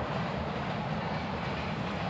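Steady, even outdoor background noise, a low rumble with hiss and no distinct events.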